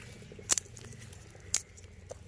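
Fingers peeling garlic cloves, the dry papery skins crackling, with two sharper snaps about half a second and a second and a half in.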